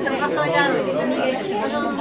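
Chatter: several people talking over one another, with no single voice standing out.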